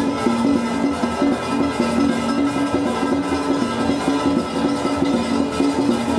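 Music playing steadily and fairly loud, with a bass line moving between a few notes.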